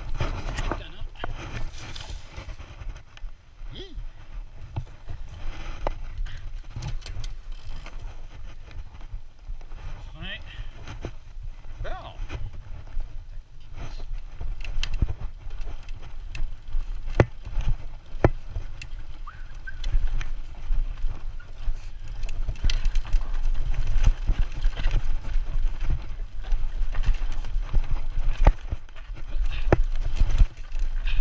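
Mountain bike descending a rough dirt trail, heard from a chest-mounted camera: a steady low rumble of tyres and suspension over dirt and wind, broken by frequent sharp clacks and rattles as the bike hits rocks and roots. The rumble gets louder in the second half.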